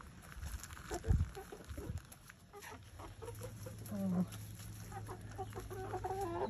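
Backyard hens clucking in short low calls, with small scratching clicks and a single low thump about a second in. A steady low hum sets in about halfway through.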